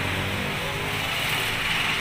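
A steady mechanical hum with a hiss over it, unchanging throughout. The scooter's electric starter makes no cranking sound, because it is not working.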